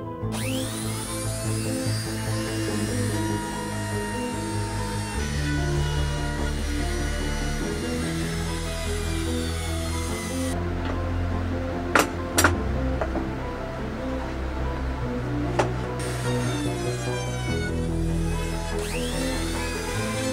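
Background music over a small trim router cutting the angle into a fiberglass fin's tab in a wooden jig. The router's whine rises as it spins up at the start and again near the end, with two sharp clicks about midway.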